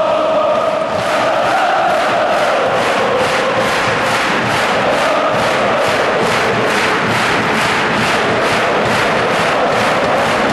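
A large football crowd chanting in unison, joined about a second in by steady rhythmic clapping, a little over two claps a second.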